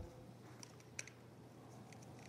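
A few faint clicks and taps as a camera gimbal's mount plate is seated in a DJI Inspire 2's quick-release gimbal mount and twisted a quarter turn to lock, with one sharper click about a second in, over near silence.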